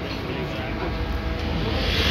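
Busy restaurant background noise: a steady low rumble under a haze of indistinct voices.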